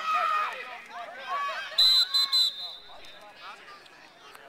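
A referee's whistle is blown in three quick, shrill blasts about two seconds in, stopping the play. A loud shout from onlookers comes just before it, with voices chattering around it.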